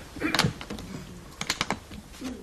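A briefcase being handled and shut: a sharp knock about half a second in, then a quick run of four or five clicks shortly before the end.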